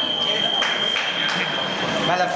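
Electric fencing scoring machine sounding one steady high-pitched tone that signals a registered touch, cutting off near the end. Beneath it are hall chatter and a few light clicks.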